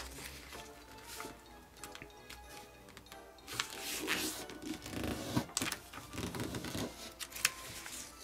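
Origami paper being folded and creased by hand: soft rustling and sliding, busiest in the second half. Quiet background music runs underneath.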